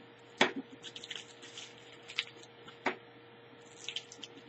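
Bubble wrap and tape around a small package being handled and picked open by hand, crinkling and crackling with a few sharp snaps. The loudest snap comes about half a second in, with two more near two and three seconds.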